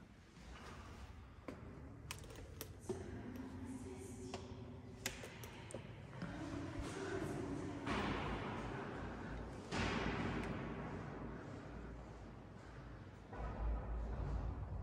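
Footsteps on stone steps, heard as a few irregular sharp taps, with faint voices in the background. There are louder rushes of noise about eight and ten seconds in.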